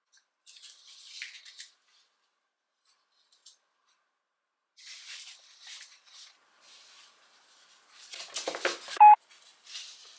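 Dry-erase marker writing on a whiteboard in short scratchy strokes, in two spells. Near the end comes a louder bout of handling noise with a brief squeak, the loudest sound.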